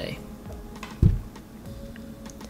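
A wristwatch being set down on a wooden tabletop: a soft thump about a second in, with a few light clicks from the case and strap.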